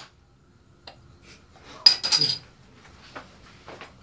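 Glass bottle of Strongbow apple cider being handled and opened, with light clinks of glass. About two seconds in comes one sharp crack with a short ringing hiss, the cap coming off.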